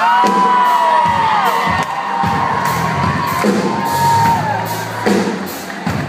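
A live band playing loudly, keyboards over a steady drum beat, with audience members screaming and cheering over the music in long rising-and-falling screams.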